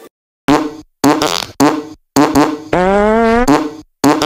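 A run of about six fart sound effects, short separate blasts with a longer one near the end that rises slowly in pitch.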